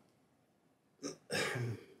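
A man clearing his throat once, briefly and quietly, about a second in.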